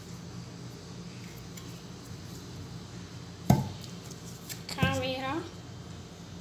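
A single sharp knock, as of an object set down on a hard kitchen surface, about three and a half seconds in, over a steady low hum. A brief spoken word follows about a second later.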